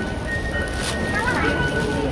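Busy metro station concourse: a low steady rumble and crowd noise, with voices in the background and music with held tones playing.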